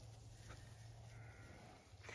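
Near silence outdoors, with one faint, distant sheep bleat a little past a second in.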